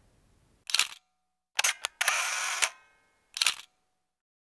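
Transition sound effect: a series of sharp clicks, with a short hissing burst in the middle that carries a faint ringing.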